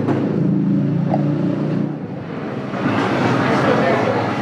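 A motor vehicle engine running with a steady low hum that fades about two seconds in, followed by a rougher, noisier sound near the end.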